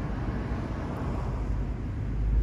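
Steady low outdoor rumble with no distinct events, the kind left by nearby vehicle and traffic noise.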